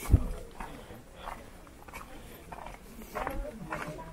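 Faint, scattered voices of people talking some distance away, with a brief low thump right at the start.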